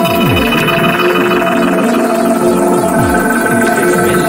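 Hi-tech psytrance: held electronic synth tones over low notes that slide downward again and again.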